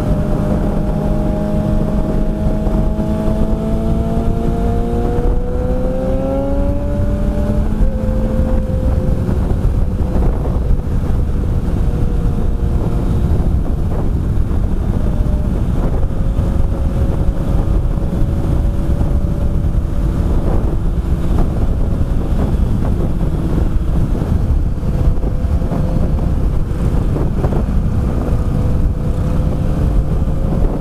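Kawasaki ZRX1100 inline-four engine pulling hard at highway speed, its pitch rising for about eight seconds, then dropping at a gear change and settling into steady cruising. Heavy wind rush on the microphone runs under it throughout.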